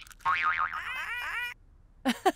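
Cartoon computer-game sound effect: a boing-like electronic jingle whose pitch wobbles rapidly, then runs into a string of short bouncing notes, stopping about a second and a half in.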